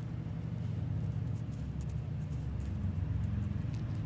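A steady low hum with a few faint light clicks.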